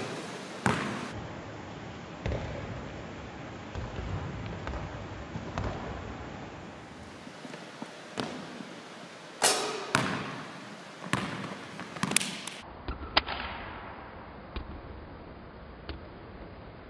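A string of separate basketball knocks in a gymnasium: the ball bouncing on the hardwood floor and striking the backboard and rim. A group of louder knocks comes close together in the second half.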